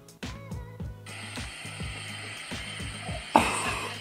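Background music with a steady beat; from about a second in, a steady hiss of water spraying from a handheld salon sink sprayer, louder near the end.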